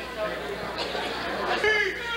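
Crowd chatter: many people talking at once, with one clearer voice near the end.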